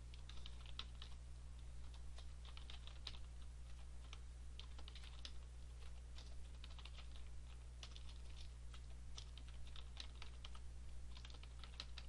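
Keys typed on a computer keyboard in short runs with brief pauses between them. The clicks are faint, over a low steady hum.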